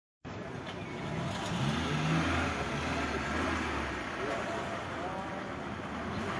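A car engine's low hum under general street noise, fading out about four seconds in, with people talking faintly in the background.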